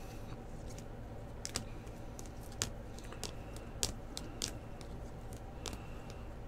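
Rigid plastic card top-loaders clicking against one another as a stack of them is handled and flipped through: irregular sharp clicks over a low steady hum.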